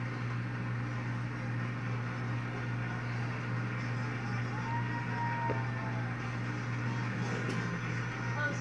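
A steady low hum fills a small room, with faint music from a wall-mounted television's speaker during a commercial break.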